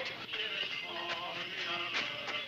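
Faint singing voices with music, the notes wavering and held.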